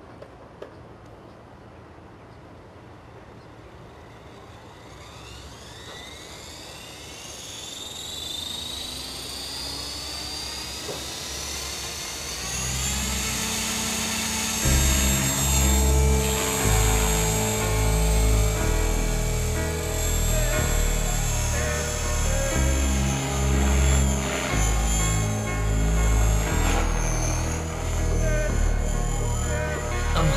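Align T-Rex 500 ESP electric RC helicopter spooling up: the brushless motor and rotor whine climbs steadily in pitch over the first dozen seconds as it gets ready to lift off. From about halfway a song with a heavy beat comes in and covers it.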